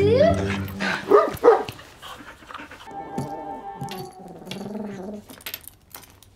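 A cartoon pet triceratops making short dog-like yips and whines that slide up and down in pitch in the first two seconds, followed by soft background music.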